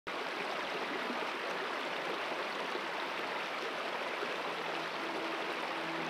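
Shallow, rocky mountain creek flowing with a steady, even rush of water. Faint held musical notes come in near the end.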